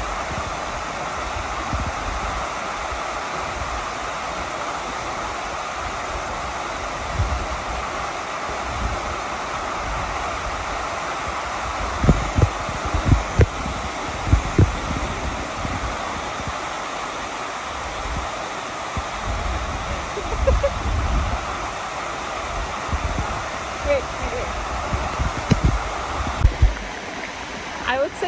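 Waterfall pouring into a plunge pool: a steady, even rush of falling water, with scattered low thumps of wind on the microphone. The rush cuts off near the end.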